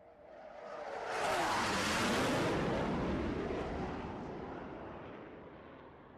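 Aircraft fly-by sound effect: an aircraft's noise swells to a peak about two seconds in and then slowly fades away as it passes, with a tone sliding down in pitch as it approaches.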